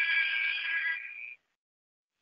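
A short held musical sting, a chord of several steady high tones that fades out a little over a second in.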